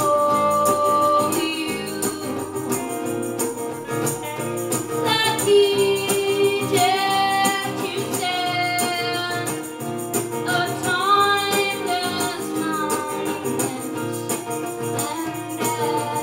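Live band playing an upbeat song: strummed acoustic guitar, electric guitar and a tambourine keeping a steady beat, with a melody line that slides and bends in pitch over the top.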